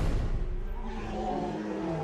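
A monster roar sound effect: a sudden loud hit, then a long low roar that slowly fades, its pitch dropping near the end.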